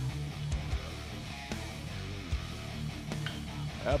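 Background music with guitar, a steady low bass line underneath.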